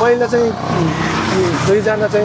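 Speech throughout, with a steady low drone beneath it around the middle.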